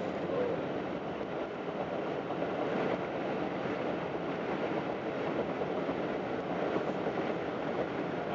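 Steady rumble of a moving vehicle heard from on board: an even, unbroken travel noise with no distinct knocks or changes.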